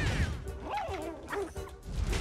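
Animated-film soundtrack: score over a low rumble of flames, with a few short squealing yelps that rise and fall about halfway through, the cries of a cartoon raccoon.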